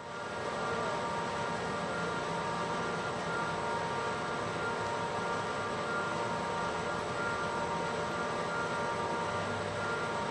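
Steady machinery noise: a constant hum of several fixed tones over a even hiss and low rumble, fading in at the start and holding level throughout.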